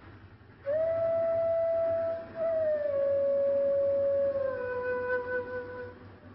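Background music: a slow flute-like melody of long held notes, each gliding down a step lower, starting about half a second in.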